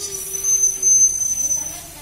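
Children's voices imitating a train: a long hissing 'shh' with a held low hum underneath. The hum stops about a second in, and the hiss fades out soon after.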